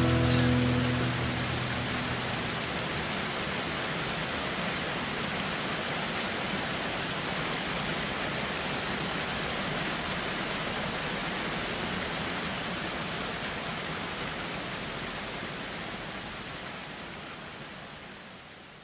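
The last acoustic guitar chord rings out and dies away in the first second, leaving the steady rush of a waterfall. The water sound fades out slowly near the end.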